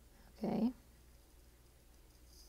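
A single brief vocal sound about half a second in, rising slightly in pitch at its end.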